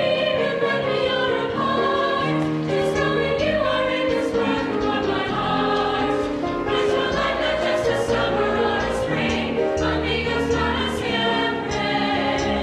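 High school mixed chorus of male and female voices singing in parts, holding chords that change every second or so.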